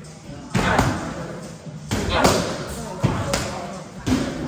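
Boxing gloves striking Muay Thai pads held by a trainer: sharp slapping impacts in quick pairs, about three pairs a second or so apart.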